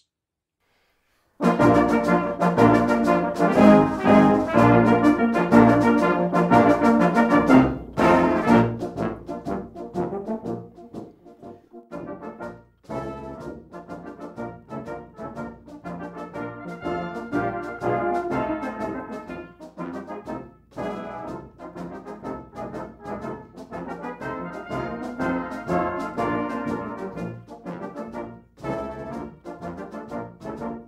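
Brass band playing a march. After about a second and a half of silence it comes in loudly, then drops to a softer passage around ten seconds in.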